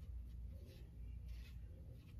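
Sponge brush dragging paint across a wooden board in a few soft, faint strokes, over a low steady room hum.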